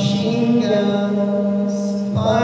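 A young male singer holding one long sung note, steady in pitch with a slight upward bend about half a second in.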